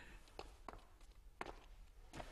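Near silence with three faint soft taps, the clearest about one and a half seconds in.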